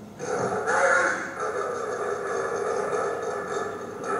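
A recorded animal sound played back for a guessing game, starting just after the beginning, loudest about a second in, then running on steadily.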